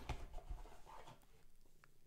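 Faint handling sounds of a cardboard box: light scraping and a few soft taps as papers are slid out, fading to near silence near the end.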